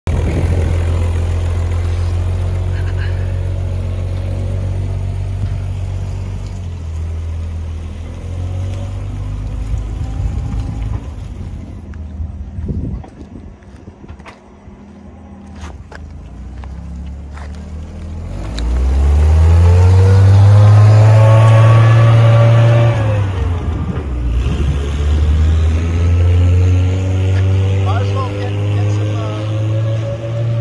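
Ferret scout car's Rolls-Royce six-cylinder petrol engine running, steady and low at first, then climbing in pitch as the car accelerates about two-thirds of the way in, easing off and picking up again near the end.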